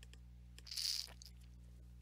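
Low, steady electrical hum on a headset microphone line, with one short breathy hiss a little under a second in.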